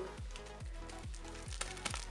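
Background music with a steady beat of about three drum strokes a second. Near the end come a few quick crinkles of a thin plastic piping bag being handled.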